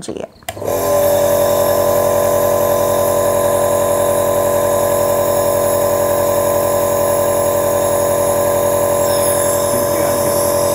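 A Dr Trust air-compressor nebulizer is switched on with a click about half a second in. Its compressor then runs with a loud, steady buzzing hum, pumping air to turn the medicine into mist.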